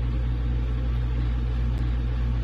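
A steady low hum of background noise with no other sound of note.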